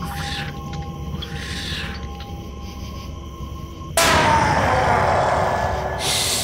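Eerie Halloween sound effects: a droning soundscape of steady held tones over a low rumble. About four seconds in, a sudden loud rushing hiss starts, its pitch falling.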